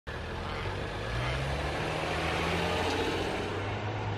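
A car on the street: a steady low engine hum over road and tyre noise.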